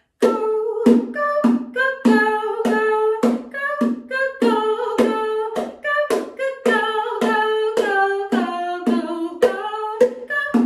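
A woman singing a children's song, with a steady tapped beat about twice a second.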